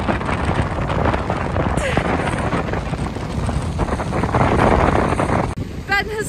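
Strong wind buffeting the microphone in a dense, steady rumble, cutting off abruptly near the end.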